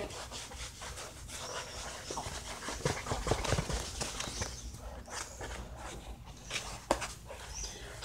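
Muffled, scratchy rustling of hair rubbing against the microphone inside a costume helmet, with a low rumble and a few soft clicks, one sharper click near the end.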